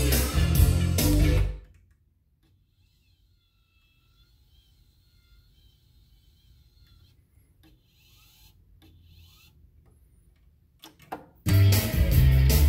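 Music played from a vinyl record on a Revox B790 direct-drive turntable stops about a second and a half in. Near silence follows, with only a faint low hum and a few soft clicks. After a couple of small clicks near the end, the music starts again loudly.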